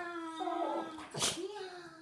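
A dog giving long, drawn-out vocal notes: one held for about a second, then a short sharp noise, then a second, shorter note that fades.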